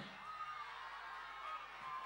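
Faint crowd noise from a large audience, with a thin, wavering high call running through it.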